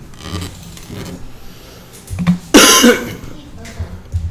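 A person's single loud cough about two and a half seconds in.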